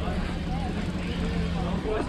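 Scattered voices of bystanders talking over a steady low hum.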